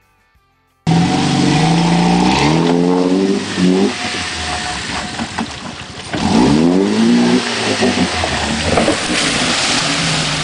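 Jeep Wrangler engine revving hard under load as it climbs a muddy creek bank, its pitch rising twice, over the noise of tyres churning mud and water. The sound cuts in suddenly about a second in, after near silence.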